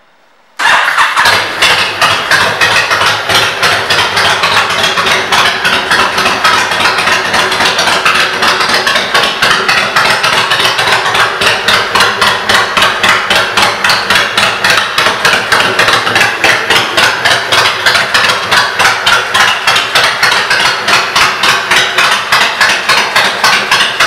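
A Honda VTX 1300C's V-twin engine, breathing through aftermarket Vance & Hines exhaust pipes, comes in suddenly about half a second in. It then runs loud and steady at idle with an even, rapid pulsing beat.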